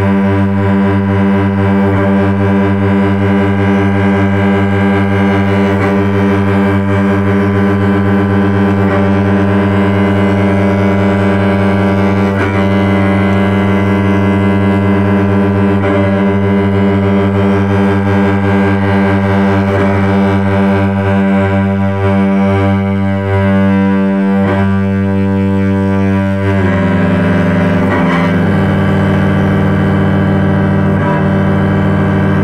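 Solo cello bowed in long, sustained low notes with rich overtones. The notes change twice in the last few seconds.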